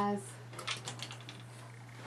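A short run of light clicks and taps, about half a second to a second in, from clothes being handled. A steady low hum runs underneath.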